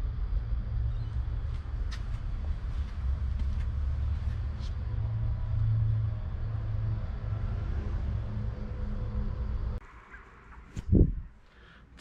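A low, steady rumble that cuts off suddenly about ten seconds in, followed by a single low thump shortly before the end.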